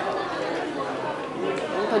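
Background chatter of several indistinct voices, like diners talking in a busy restaurant. A woman starts speaking near the end.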